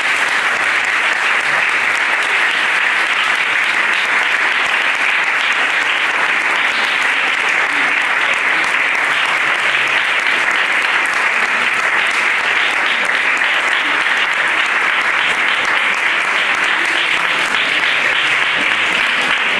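Audience applauding steadily after a violin recital piece.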